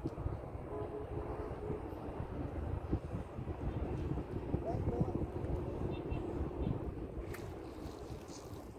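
Wind rumbling on the microphone outdoors, with faint voices in the background.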